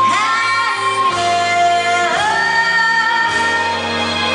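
A woman singing a Christmas song with Danish lyrics live, with band accompaniment. She holds long notes that glide up into pitch, moving to a new note about a second in and again about two seconds in.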